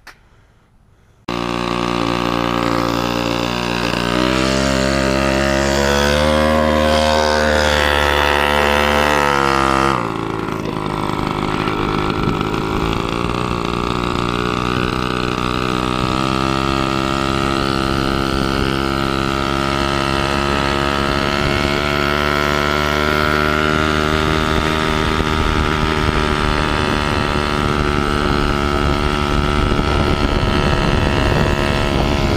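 Mini chopper's small engine starting about a second in and running, rising in pitch for several seconds, then dropping abruptly about ten seconds in and running steadily as the bike is ridden along.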